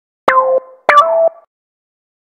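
Two short cartoon sound effects about half a second apart, added in editing. Each starts sharply with a quick falling sweep over a held tone, and the second is pitched a little higher.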